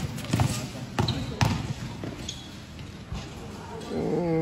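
A basketball being dribbled and bouncing on an indoor court, a run of irregular thuds, with a couple of short sneaker squeaks from players moving on the floor.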